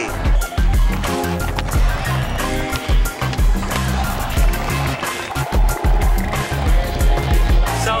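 Music with a heavy bass beat over skateboard sounds: a board rolling and clacking on concrete, with sharp clicks of the board striking the ground.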